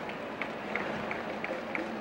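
Steady arena crowd noise with a run of short, high squeaks from basketball shoes on the hardwood court, about three a second, as players run.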